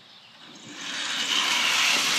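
A small toy car's wheels rolling down a sheet of corrugated metal roofing used as a ramp: a steady metallic rolling rush that starts about half a second in and builds louder.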